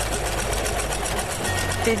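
Electric sewing machine running steadily, its needle stitching a seam through soft plush fabric with a fast, even rhythm.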